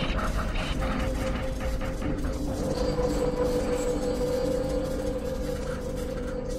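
Mechanical clicking and whirring, ratchet-like, for about the first two seconds, over a steady low humming drone that carries on to the end.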